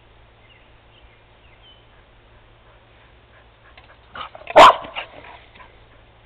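After a quiet stretch, a dog barks once, loudly, about four and a half seconds in.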